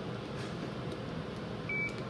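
A single short electronic beep from a Doppler ultrasound machine, about three-quarters of the way in, over a low steady background hum.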